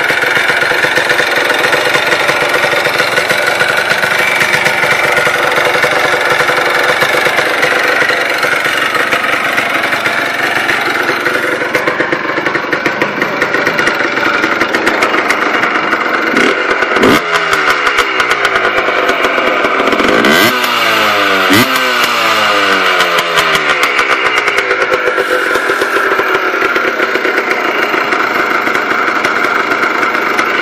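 Yamaha Blaster's air-cooled two-stroke single-cylinder engine, freshly rebuilt with a new Namura piston, running steadily. About two-thirds of the way through it is blipped twice, a few seconds apart, and each time the revs fall back down over several seconds.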